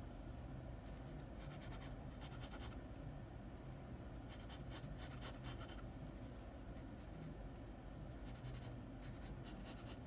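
Wooden graphite pencil sketching on sketchbook paper: faint scratchy strokes in three runs of quick back-and-forth lines, each a second or so long, with short pauses between.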